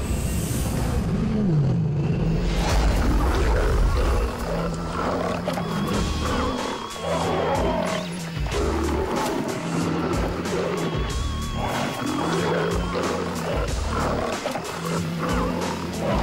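Big cats roaring over dramatic soundtrack music. The music carries a low note that repeats every second or two.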